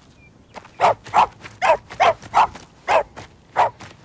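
Corgi barking: seven short barks, roughly two a second.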